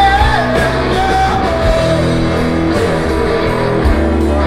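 Live rock band playing a progressive rock song: electric guitars, bass and drums, loud and steady, with a wavering high melody line over the first second and a half.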